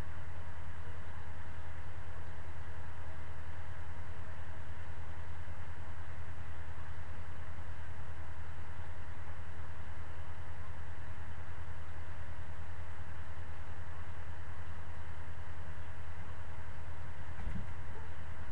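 A steady low hum with an even hiss over it, unchanging in level and pitch, with a faint steady higher tone.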